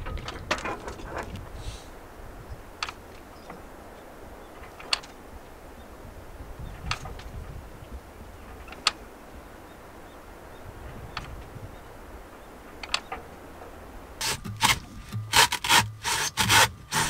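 Steady low background noise with a sharp tick every second or two, then, about two seconds from the end, a hacksaw starts cutting into a coconut in quick back-and-forth strokes.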